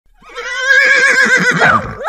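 A horse whinnying: one long call with a fast quavering pitch that drops away at the end.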